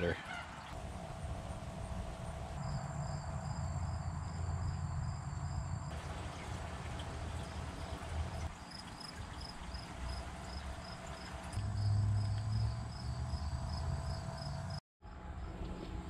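An insect chirping in a steady rhythm, about three high pulses a second, over a steady low rumble and the gentle bubbling of an air-stone bubbler in a tub of water. The sound cuts out briefly near the end.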